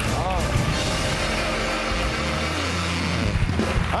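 Studio audience applauding, with music playing.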